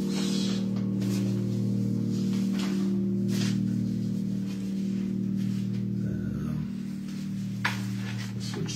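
Electric keyboard holding a steady sustained chord, its low tones unchanging, with a few faint clicks.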